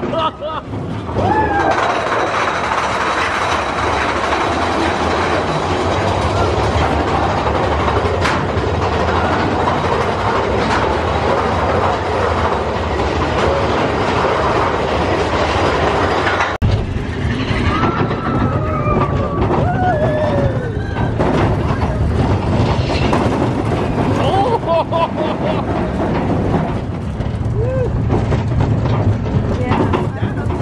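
Big Thunder Mountain Railroad mine-train roller coaster running along its track at speed: a continuous loud rumble and clatter of the cars on the rails, with riders' voices calling out now and then.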